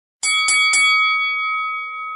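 A bell struck three times in quick succession, then ringing on and slowly fading: a fight-ending bell marking the win.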